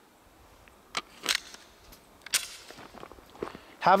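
Quiet handling and movement noise: a few light clicks and knocks about a second in, a short scraping rustle a little after two seconds, and faint ticks later. No gunshots.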